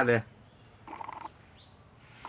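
A domestic pigeon gives a brief, fluttering call about a second in, lasting about half a second.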